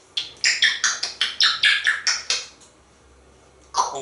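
African grey parrot making a rapid run of about ten short, sharp, high-pitched sounds, four or five a second, for about two seconds. A spoken word follows near the end.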